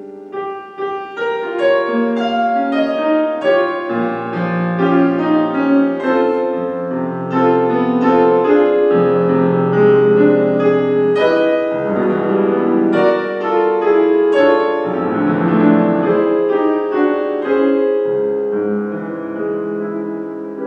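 A Kawai grand piano played with the left hand alone, in a romantic-style solo piece. A melody of struck notes rings over sustained bass notes, swelling in loudness within the first couple of seconds.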